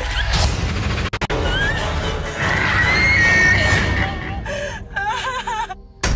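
A film-trailer sound mix: a low rumbling music bed under a woman's screams. There is a long high scream in the middle and wavering cries near the end.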